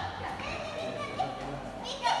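Children's voices and play noise, indistinct chatter without clear words.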